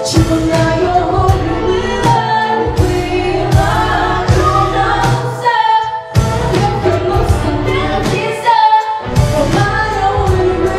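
Two female voices singing a Ukrainian pop song together into microphones, over instrumental backing with a steady beat.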